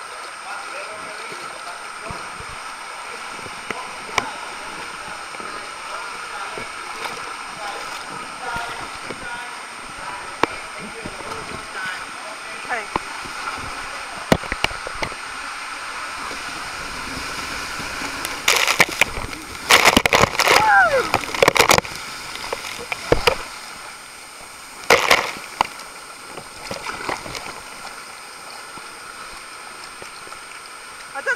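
Inflatable ring sliding down a waterslide: a steady rush of water running under the ring, broken by a cluster of loud splashes and knocks a little over halfway through and another short burst a few seconds later.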